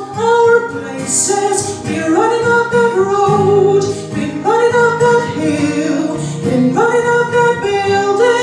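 A woman singing a slow melody into a microphone in long held notes, over instrumental accompaniment.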